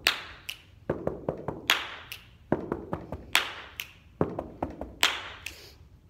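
Body percussion: hand claps and finger snaps mixed with softer foot stomps on a carpeted floor, in a quick repeating pattern. Sharp hits land a little under a second apart, with duller thuds between them.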